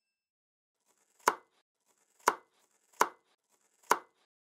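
Kitchen knife chopping down onto a wooden cutting board: four sharp chops, roughly a second apart, as a rolled omelette is sliced.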